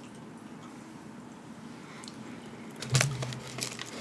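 Bottle of black cherry sparkling water being handled and opened: low room tone at first, then a short cluster of clicks and crackles about three seconds in.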